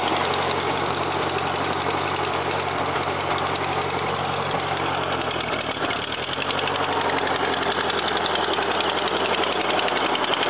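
1941 Ford tractor's four-cylinder flathead engine running steadily, with a brief dip in engine speed about six seconds in.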